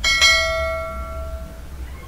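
Notification-bell chime sound effect: one struck ding that rings out in several tones and fades over about a second and a half.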